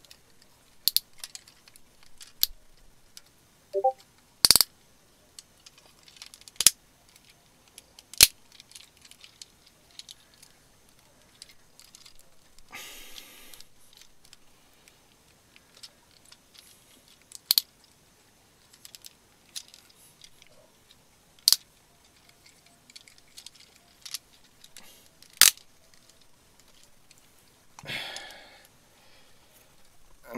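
Plastic parts of a Transformers Energon Devastator combiner toy being worked by hand: sharp clicks and snaps every few seconds as pieces are pulled off and pegged into place, with a short rustle of handling near the middle and another near the end.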